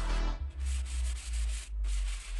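Hand sanding of a pine wood cabinet shelf: a sanding pad rubbed over the wood in a few back-and-forth strokes.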